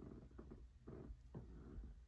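Near silence, with a few faint rustles of a vinyl LP being handled in its plastic sleeve.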